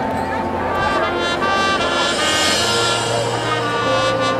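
Marching band brass and winds playing sustained notes and chords that change pitch every second or so, swelling brighter and louder about halfway through.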